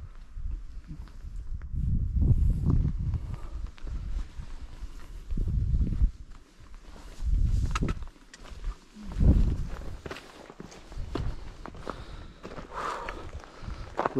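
Hiker's footsteps on rock and gravel, with low gusts of wind rumbling on the microphone that come and go every second or two.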